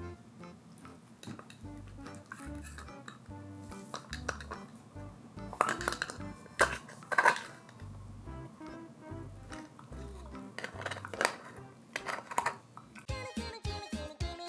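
Puppy gnawing a dried cow-hoof chew on a hard floor: hard clicks and knocks of teeth on the hoof and the hoof on the floor, loudest in two clusters about six and eleven seconds in. Background music with a repeating bass line plays throughout, and a different, busier tune starts near the end.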